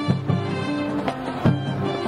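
Marching band playing live: brass holding chords over sharp drum hits, the loudest hit about one and a half seconds in.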